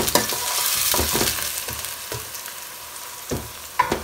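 Grated onion and green chilies sizzling in hot oil in a stainless steel pan, stirred with a metal spoon that scrapes and clicks against the pan. The sizzle grows quieter through the second half.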